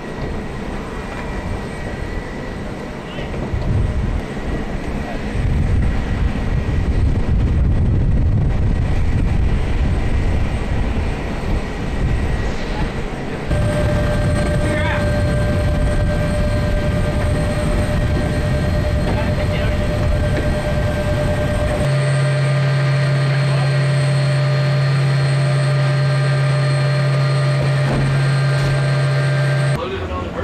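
Aircraft and machinery running steadily on a military airfield flight line: a low rumble with a high steady whine, the mix changing abruptly at cuts. In the last part a loud, steady low hum with several higher tones over it.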